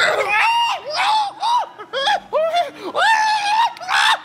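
A man screaming in panic: a rapid string of short, high-pitched shrieks, each rising and falling in pitch.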